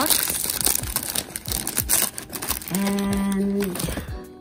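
Clear plastic wrapping crinkling and rustling as it is handled by hand, in quick irregular crackles. Near the end a voice holds a drawn-out hum.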